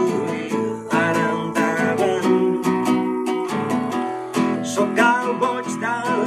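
A man singing live while strumming an acoustic guitar, the voice and chords continuing through.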